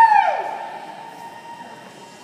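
A spectator's high-pitched whoop of cheering, loud at first and then held on one note for about a second and a half as it fades, echoing in a large indoor arena.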